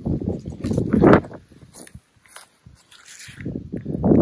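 Footsteps on grass, approaching an archery target, after a brief stretch of speech.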